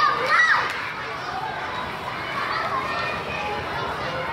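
Many children's voices chattering and calling out over one another, with one child's high, loud call about half a second in.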